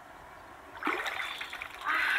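Water splashing and pouring as a large freshwater mussel is lifted by hand out of shallow river water. It comes in a sudden burst about a second in and again near the end, with water running off the shell.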